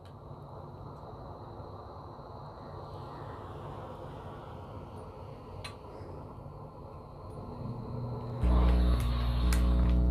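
Faint low rustling of a clothes iron being slid and pressed over a cotton waffle-weave towel. Near the end, background music with sustained low notes comes in, much louder.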